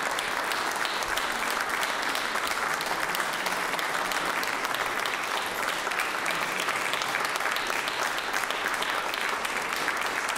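Concert audience applauding steadily: dense, even hand-clapping.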